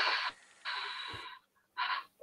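A man imitating the hiss of an insecticide sprayer with his mouth: a short hiss, then a longer one of nearly a second, then a short one near the end.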